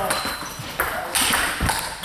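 Table tennis ball clicking off bats and table, several sharp clicks through the rally, with voices talking in the background.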